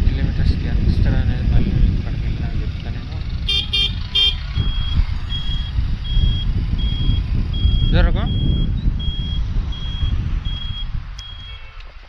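Motorcycle riding through traffic, with wind rumble on the microphone and engine and road noise that fade as the bike slows near the end. About four seconds in come three quick high beeps, then a steady high beep repeating about 1.4 times a second: the motorcycle's turn-signal buzzer as the rider pulls over.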